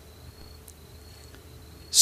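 Crickets trilling: a faint, steady, high-pitched note.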